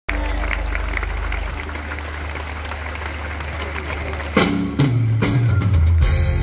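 Live rock band playing through a concert PA, heard from among the audience. A low sustained note runs under crowd noise, then about four and a half seconds in the full band comes in louder, with bass notes and drum hits.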